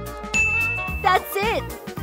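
Bright ding held for under a second, then a quick wobbling sound effect that bends up and down in pitch, marking the correct answer in a quiz. Upbeat swing-style background music plays throughout.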